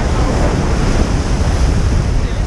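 Sea waves breaking and washing over shoreline rocks, a loud, steady surging, with wind buffeting the microphone.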